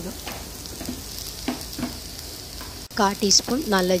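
Sliced onions and whole spices frying in oil in a granite-coated pan, a steady sizzle with a few light ticks. A voice speaks briefly near the end.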